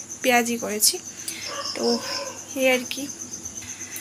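Insects chirping in the background: a steady, high, evenly pulsed trill. Short, quiet fragments of a woman's voice come and go over it.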